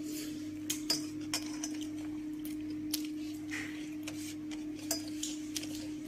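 Fingers mixing rice on a stainless steel plate, with scattered light clinks and scrapes on the metal, over a steady low hum.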